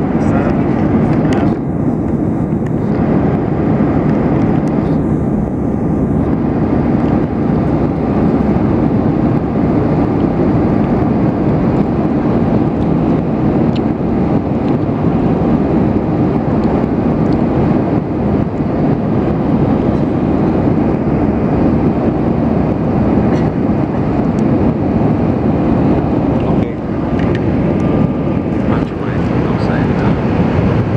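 Jet airliner cabin noise during the climb after takeoff: the engines and rushing air make a loud, steady roar inside the cabin.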